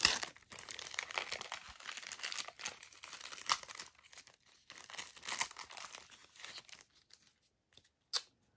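A trading card pack wrapper being torn open and crinkled as it is peeled off the stack of cards: a run of crackling, rustling tears that dies away near the end.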